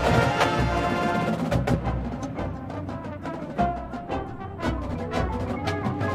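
Drum and bugle corps brass line and drumline playing together. A loud, full brass passage gives way about a second and a half in to a quieter section marked by sharp drum and percussion hits, building again near the end.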